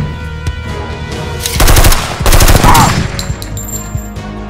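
Two loud bursts of rapid automatic gunfire, a firearm sound effect, the first about a second and a half in and the second just after two seconds, over background music.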